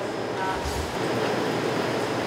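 Steady, even background hiss of room tone with no distinct events.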